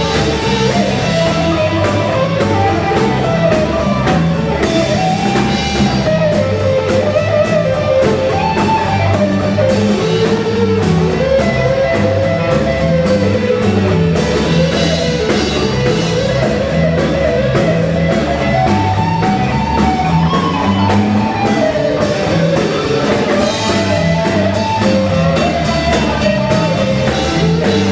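Live blues band playing an instrumental passage: an electric guitar plays a wandering lead line over a drum kit with cymbals and a stepping bass line.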